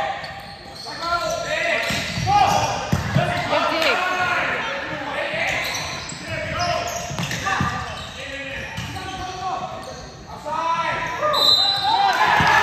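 Indoor volleyball rally: the ball being hit again and again over the net, with players and spectators calling and shouting, echoing in a large gym.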